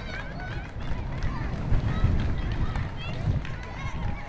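Voices calling and shouting across a football pitch, short and scattered, over a steady low rumble.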